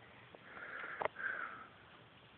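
A person sniffing through the nose twice close to the microphone, two short hisses with a small click between them.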